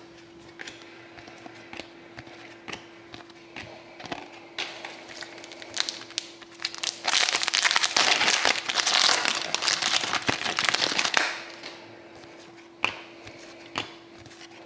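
Light clicks and taps of trading cards being handled, then, about seven seconds in, loud crinkling and crackling lasting about four seconds as a hockey card pack's wrapper is torn open, followed by a few more light taps.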